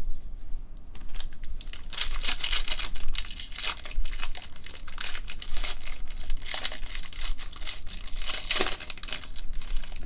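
Foil trading card pack being torn open and crinkled by gloved hands, a run of crackling, rustling bursts that starts about two seconds in and goes on until near the end.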